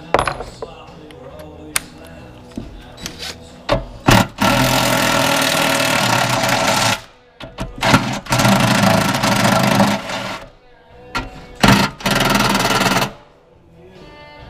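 Cordless impact driver hammering tower bolts loose in three bursts: the longest, about two and a half seconds, starts some four seconds in, then two shorter ones follow. Sharp knocks and clanks come between the bursts as the socket goes onto the bolts on the metal frame.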